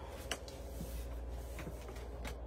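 Faint handling noises, a few light clicks and rustles, as a paper greeting card is opened, over a steady low hum of room tone.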